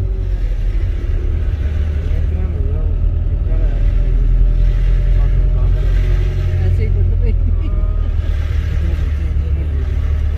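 Steady low rumble of the vehicle's engine and road noise heard from inside the cabin as it moves slowly in traffic, with indistinct voices over it.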